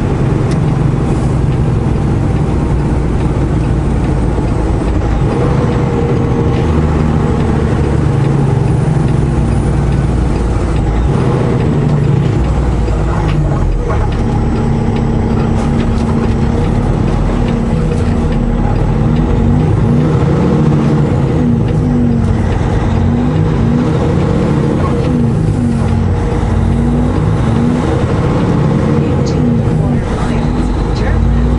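Semi truck's diesel engine running steadily under road noise, heard from inside the cab. Partway through, the engine note wavers and shifts as the truck slows through an interchange and pulls away again.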